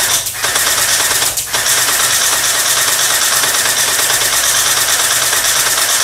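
Battery-powered ZeHua M249 SAW V4 gel blaster firing full-auto: a fast, continuous mechanical rattle, broken by two brief pauses in the first second and a half, stopping right at the end.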